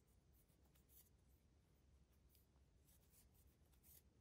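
Near silence, with a low hum and a few faint, light ticks and scratches from a crochet hook working yarn.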